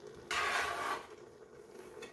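A stainless-steel bench scraper scraped once across a wooden cutting board, gathering chopped oyster mushrooms; a short scrape of under a second.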